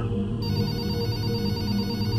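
A landline telephone ringing: a high, rapidly repeating bell ring that starts about half a second in, over background music.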